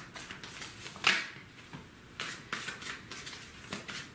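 Tarot cards being handled and shuffled by hand: a run of soft clicks and card flicks, with one sharper, louder snap about a second in as a card comes out of the deck onto the mat.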